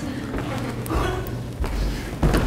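Footsteps on a wooden stage, heard as low thuds and rumble that grow stronger in the second half, over a steady low hum.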